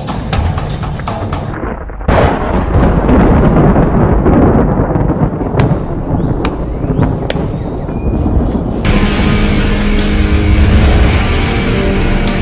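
Dramatic soundtrack music with a sudden loud boom about two seconds in and a long rumble after it. Near nine seconds the music turns denser and louder, with held tones.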